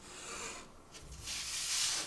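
A plastic tailor's curve ruler sliding and rubbing across pattern paper in two swishes, the second longer and louder.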